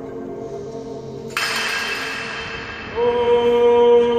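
A man's voice singing long held notes that the baptistery dome's echo sustains and layers into chords. A lingering chord is fading when a sudden sharp noise comes about a second in and dies away in the echo. About three seconds in, a new, louder sung note enters and rings on.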